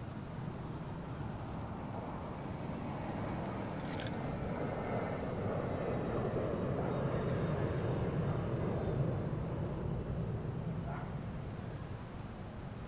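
Jet airliner flying high overhead: a distant steady rumble that swells through the middle seconds and eases near the end. A camera shutter clicks once about four seconds in.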